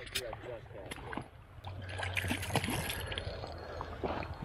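Faint voices over a low rumble of moving water, with scattered clicks.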